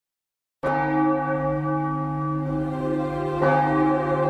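A bell struck about half a second in, its deep tone ringing on steadily, then struck again near the end.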